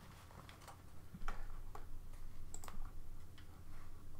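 About a dozen light, irregularly spaced clicks and taps, quiet, over a faint steady low hum.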